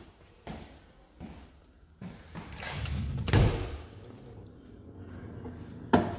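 An interior door being opened and gone through, with a few footsteps: a loud thud a little past the middle and a sharp knock near the end.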